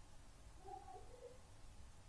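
Near silence: a faint low hum, with a few faint, short pitched sounds around the middle.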